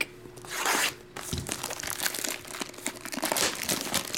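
Clear plastic shrink wrap being torn and peeled off a cardboard trading-card box. One rip comes about half a second in, then crinkling and crackling as the wrap is pulled away.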